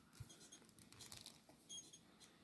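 Near silence, with faint scattered clicks and rustle from hands handling and posing a plastic action figure's legs.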